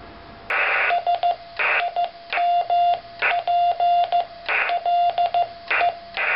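Morse code sent on a homemade brass-clip paddle keyer, heard as a radio transceiver's sidetone of about 700 Hz beeping in dots and dashes. Loud bursts of hiss fill the gaps between characters. It starts about half a second in.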